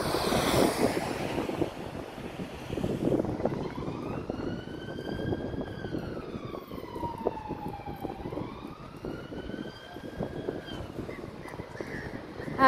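A van passing close by on the road in the first second or two, then a distant emergency vehicle siren in a slow wail, falling and rising in pitch, from about three seconds in until near the end, over steady street traffic noise.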